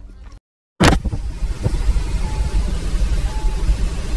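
Road and wind noise inside a moving car: a loud, steady rumble that cuts in suddenly just under a second in, after a brief silence.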